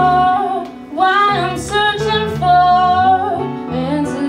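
Live band music: a woman singing the lead melody over electric guitar, bass guitar and a hand drum, with a short dip in the sound about a second in.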